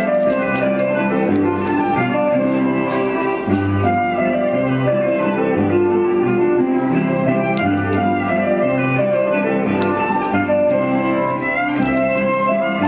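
Instrumental Norwegian folk dance tune playing, with a regular bass pattern under sustained melody notes.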